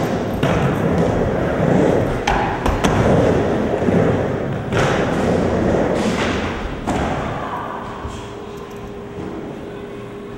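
Footsteps and several heavy thuds on a skatepark ramp as a person runs and climbs up onto the ramp deck, with a few sharp knocks among them; a faint steady hum comes in near the end.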